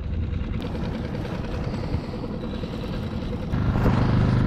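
Small outboard motor running steadily as the skiff cruises under way, with water rushing along the hull. It gets a little louder near the end.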